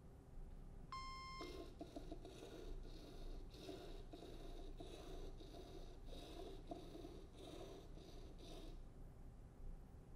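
Ozobot Evo coding robot running its program: a short electronic beep about a second in, then a faint pulsing whirr from its small drive motors as it moves and turns, stopping about a second before the end.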